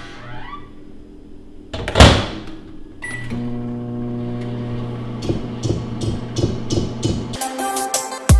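Microwave oven melting butter: a short beep as it starts, then a steady low hum while it runs. A short loud whoosh comes just before the beep, and background music with a regular beat comes in over the hum and grows louder near the end.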